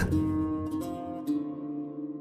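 Slow background music in a pause of the recitation: a few held notes on a plucked string instrument, a new note about every half second, slowly fading.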